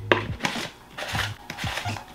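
Red plastic mushroom-shaped lid of a toy bug-catcher kit being pressed down onto its jar: a series of light plastic clicks and rubbing sounds.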